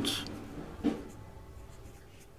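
Faint scratching of a ballpoint pen writing digits on workbook paper, just after the tail of a spoken word at the start.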